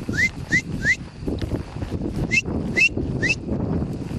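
A person whistling to drive cattle: short, breathy, rising whistles, three in quick succession and then three more about two seconds later. Under them runs a steady rustle of wind and grass.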